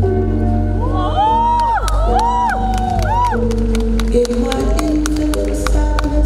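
Slow rumba song playing over a large hall's sound system. About a second in, the audience cheers over it with a few rising-and-falling calls and scattered sharp claps.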